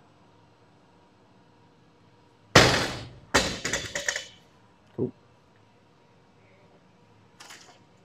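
Loaded barbell with bumper plates coming down from overhead onto a rubber gym floor: a loud impact about two and a half seconds in, then a second set of hits with a rattling ring from the plates a second later, and a small knock a second after that.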